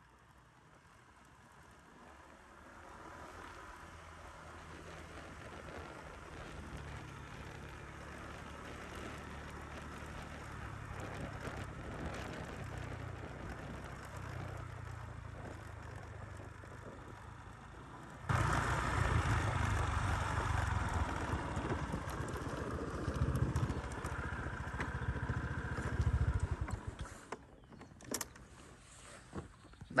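Motorbike engine running while being ridden along a road, building up over the first few seconds. It gets suddenly louder about two-thirds of the way through, then drops away a few seconds before the end as the bike comes to a stop.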